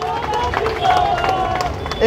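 Speech only: a man's voice over a microphone and loudspeakers, with crowd noise underneath.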